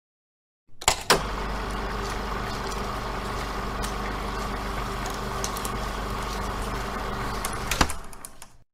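Steady mechanical running noise with a low hum, starting with two loud clunks about a second in and ending with another clunk near the end.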